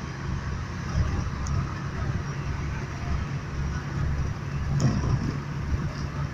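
Engine and road noise heard from inside a moving vehicle: a steady low hum.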